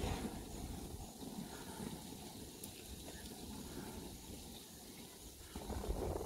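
Wind gusting across the microphone at a grill: a low, uneven rumble with a faint steady hiss above it.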